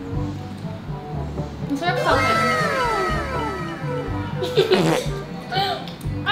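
Background music with a steady beat. About two seconds in, an edited-in sound effect of several tones gliding downward in pitch plays, and women's voices and laughter come in near the end.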